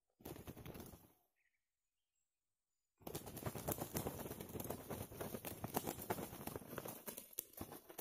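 A decoy rooster and a wild red junglefowl rooster fighting. There is a short flurry of wing-beating in the first second, then from about three seconds in a long run of rapid wing flapping and scuffling, with many sharp slaps.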